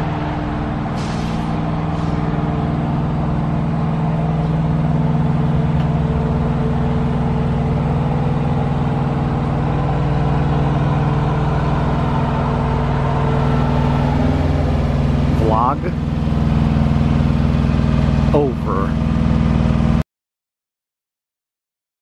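A truck engine idling steadily with an even, low hum. Two short rising squeals come about three-quarters of the way through, and the sound cuts off suddenly shortly before the end.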